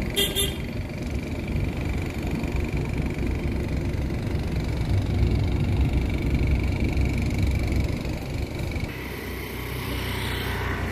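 Vehicle engine and road noise, a steady low rumble with the level rising a little in the middle, heard from a vehicle moving slowly along a street. There is a short sharp noise just after the start.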